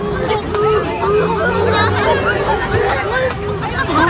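Crowd babble: many voices, children among them, chattering and calling out over one another, with no single voice standing out.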